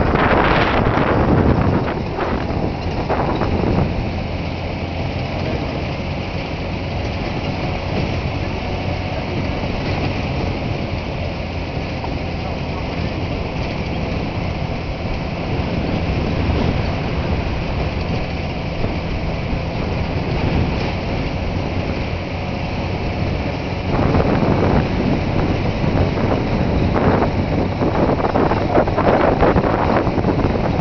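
A truck driving along a rough dirt road: a steady low engine hum under road rumble, with wind buffeting the microphone, heavier in the first couple of seconds and again in the last several seconds.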